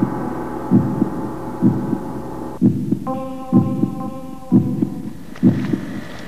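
Slow, regular heartbeat-like thumping, about one low double beat a second, over sustained droning tones that break off about two and a half seconds in and give way to a different chord shortly after.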